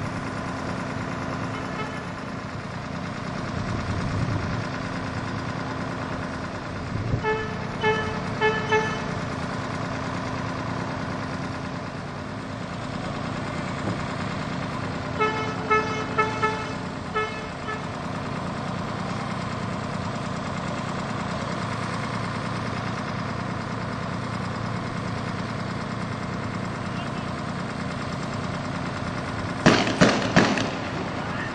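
Street traffic with running engines and a car horn sounding in runs of short toots, twice, about a quarter and halfway in. Right at the end, sharp loud bangs: shotgun shots.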